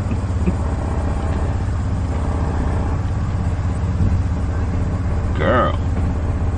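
Steady low rumble of a truck's running engine, heard from inside the cab.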